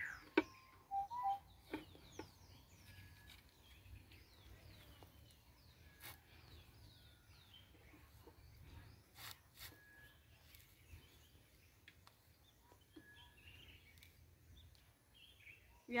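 Small birds chirping in quick, short falling notes, thickest in the first seven seconds or so, over a faint low rumble. A few sharp knocks come as the clay water pot is handled and lifted onto the head.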